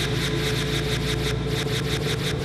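Closing theme music: a fast, even ticking pulse of about eight beats a second over a steady low drone.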